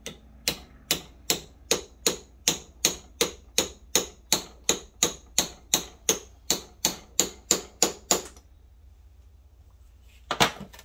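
A small hammer striking a steel punch: about twenty sharp metallic taps at a steady rate of about two and a half a second, stopping about eight seconds in. The taps are peening the housing of a clutch actuator back together.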